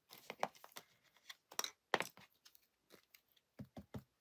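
Light handling sounds of a rubber stamp and card being positioned on a craft desk: scattered small taps, clicks and paper rustles, the sharpest a little under two seconds in.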